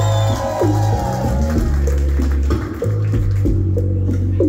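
A live band playing through a club PA, led by a deep electric bass line of sustained low notes that change every second or so, with chords above.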